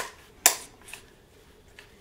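Rifle bipod leg springing out when its auto-extend button is pressed, with one sharp click about half a second in as it extends and then a couple of faint ticks.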